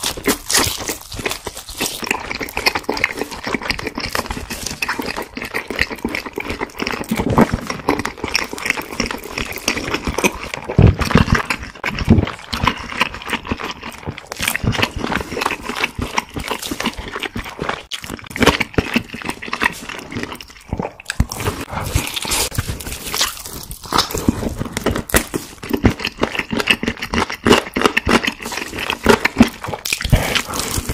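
Close-miked chewing and biting of fried chicken: a dense, irregular stream of wet smacks and crunchy clicks, with louder bites now and then.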